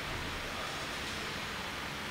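Steady, even background hiss of room tone picked up by the open microphone, with no distinct events.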